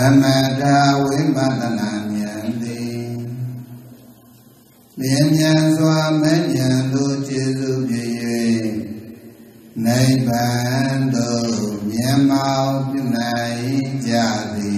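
A man's voice chanting a Buddhist verse in long, drawn-out held notes, in three phrases of about four seconds each with short breaks between them.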